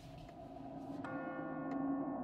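Horror-film sound design: a low, ominous drone swells in, and about a second in a bell-like chime is struck and rings on. Sharp, clock-like ticks come about every two-thirds of a second.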